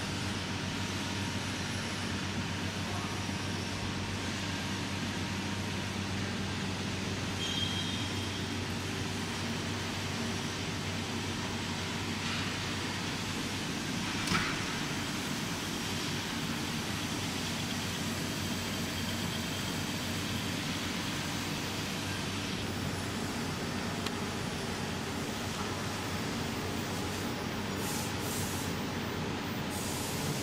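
Automatic TIG seam welding machine welding: a steady hum and hiss from the welding arc and power source over workshop noise, with one short sharper sound about halfway through.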